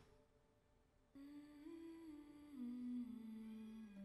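Faint wordless melody of long held notes, starting about a second in and stepping gradually down in pitch.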